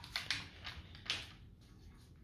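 A few faint, light metallic clicks from a breaker bar and wrench on a bolt of a Nissan VQ35DE engine, dying away after about a second.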